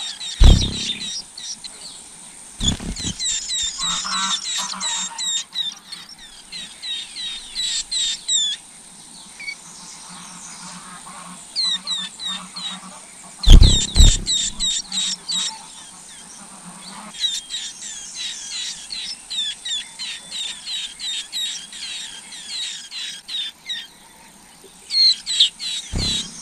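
White-eye nestlings chirping at the nest, rapid series of short high begging calls coming in bursts. Three loud low thumps break in, one shortly after the start, one near three seconds and one about halfway.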